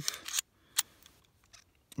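Small metallic clicks of a CZ-27 pistol's slide being drawn back along its frame during reassembly, with one sharp click just under a second in and a few faint ticks after it.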